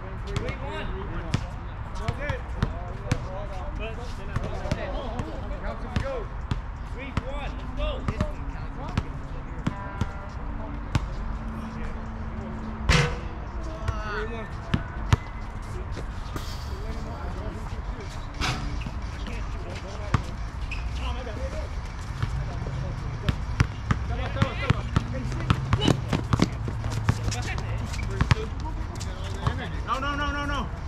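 A basketball bouncing and dribbling on an outdoor hard court, in scattered sharp knocks, with players' distant voices and calls. There is one louder knock about halfway through.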